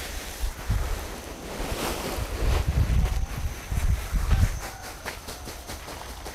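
Wind buffeting the microphone in gusts, loudest in the middle, over the rustle of a woven plastic sack as coconut coir is shaken out of it onto a pile.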